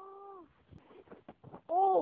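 A young voice giving two drawn-out, whiny cries with an arching pitch: one right at the start and one near the end, with faint scuffling in between.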